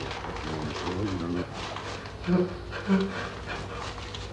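A man's wordless vocal sounds: a wavering, moaning tone early on, then two short, louder sounds about two and a half and three seconds in, over a steady low hum.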